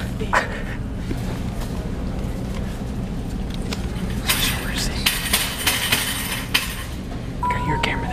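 Plastic wrapping on toilet paper packs crinkling and rustling as they are handled, densest for about two seconds in the second half, over a steady low hum. A short beep near the end.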